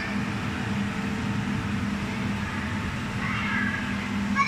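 Steady hum and rushing air of an inflatable bounce house's blower fan, with a faint high-pitched child's voice about three seconds in.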